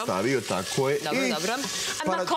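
Diced celery and other vegetables sizzling in a stainless steel pot while a wooden spoon stirs them, heard under a person talking.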